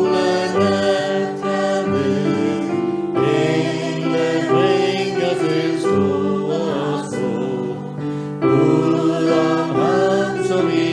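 A choir singing a Christmas hymn in long, held notes.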